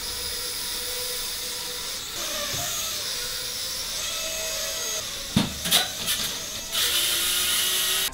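Small toy quadcopter drone flying, its tiny motors and propellers giving a steady high whine that wavers in pitch. There are two sharp knocks about five and a half seconds in, and the whine grows louder near the end.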